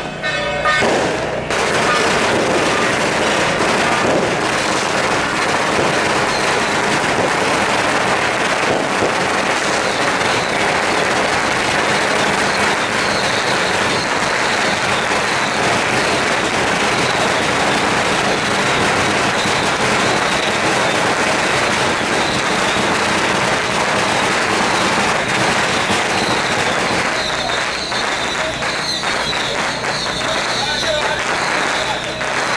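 A long string of firecrackers going off continuously, a dense unbroken crackle of rapid pops, starting about two seconds in and easing slightly near the end.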